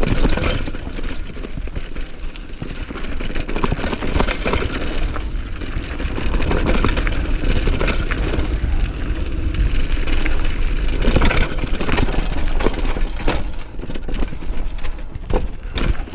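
Mountain bike riding fast downhill on dirt singletrack: tyres rolling over dirt and stones, with the bike clattering over bumps in sharp knocks, several close together in the last few seconds. A heavy rumble of wind runs on the action camera's microphone.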